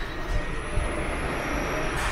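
Steady low rumble and hiss of a subway station's background noise, with a faint high whine in the middle.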